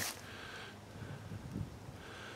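Quiet outdoor background: a faint, steady hiss with no distinct sound standing out.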